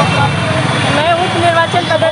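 A woman's voice over a steady low rumble of street traffic.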